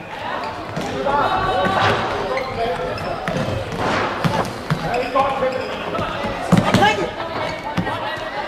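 Football being kicked and bouncing on a sports-hall floor, sharp knocks that echo in the large hall, among shouts from players and spectators. The loudest knocks come about six and a half seconds in.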